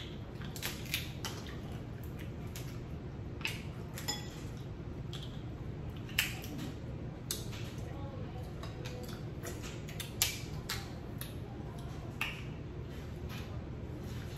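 Snow crab legs being snapped and their shells cracked by hand, heard as scattered sharp cracks and clicks, the loudest about six and ten seconds in, with a fork clinking now and then. A low steady hum runs underneath.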